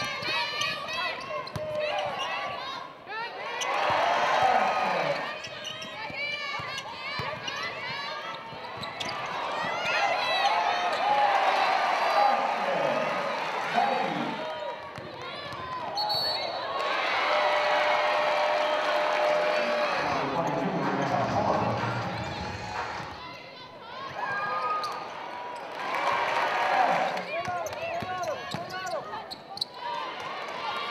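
Live basketball game sound on a hardwood court: a basketball bouncing, with players' and spectators' voices throughout.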